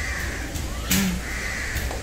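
A bird calling outdoors: two harsh calls about a second apart, with a brief tap between them.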